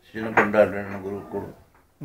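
A man speaking: one phrase of talk lasting about a second and a half, then a short pause.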